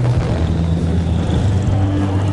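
A loud, low, steady rumble with deep sustained tones that shift now and then, from a film's soundtrack.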